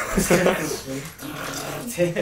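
Men laughing heartily, mixed with a few spoken words.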